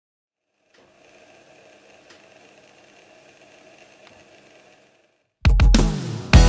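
Faint steady background hum with a couple of faint clicks, then a brief silence. Near the end a loud rock band with electric guitar, drums and heavy bass comes in abruptly.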